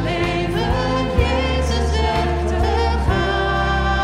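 Live worship band: a man and a woman singing a slow song in Dutch into microphones over acoustic and electric guitars, steady low bass notes and occasional drum hits.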